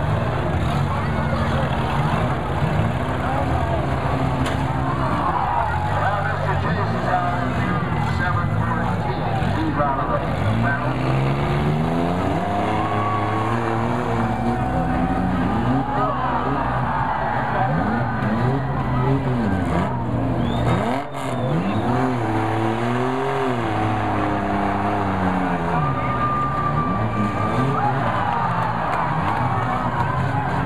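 Engines of several front-wheel-drive demolition derby cars running and revving, their pitch rising and falling again and again over a steady low drone.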